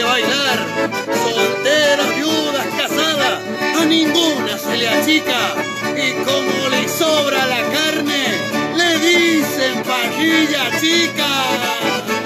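Accordion and acoustic guitar playing a lively chamamé together, the accordion leading the tune over the guitar's strummed accompaniment.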